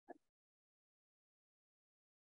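Near silence: a short fragment of a spoken syllable right at the start, then the sound cuts out entirely.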